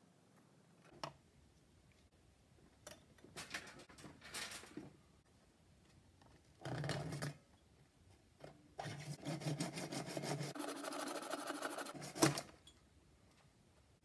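A small power tool running in two bursts, a short one and then a steady rhythmic run of about three seconds, as it cuts into a thin plastic mirror sheet, ending with a sharp knock. Before that come a few scrapes and rubs of the sheet being handled.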